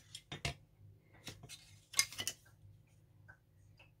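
Light clicks and knocks from a hot glue gun being handled and set down in a porcelain tray, with a sharper clatter about two seconds in, over a faint steady hum.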